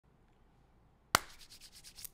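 Near silence, then a single sharp click a little over a second in, followed by faint, irregular scratchy rubbing and small clicks.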